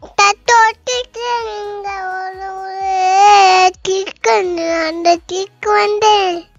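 A young girl singing unaccompanied in a high voice: a few short notes, a long held note with a slight waver, then more short phrases with brief pauses between them.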